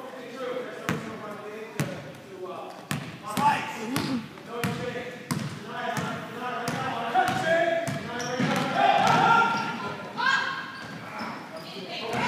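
A basketball dribbled on a hardwood gym floor, a series of sharp bounces echoing in the hall, with shouting voices of players and spectators that grow louder in the second half.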